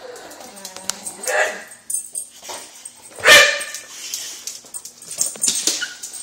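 Boxer dog vocalizing: a long, wavering whine-like call in the first two seconds, then one loud bark a little over three seconds in.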